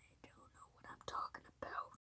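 A child whispering in short breathy bursts, with a few small clicks.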